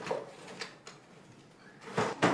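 A wooden desk drawer is pulled open and rummaged through, giving a few faint knocks and rattles.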